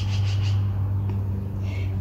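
A steady low-pitched hum that holds one pitch throughout, with a few faint brief rustles over it.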